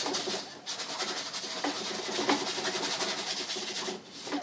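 Bristle brush scrubbing oil paint onto a stretched canvas: a steady, scratchy hiss that pauses briefly about half a second in, then carries on.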